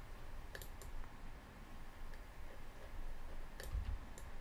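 Computer mouse clicking: a pair of quick clicks about half a second in and another pair near the end, over a faint low hum.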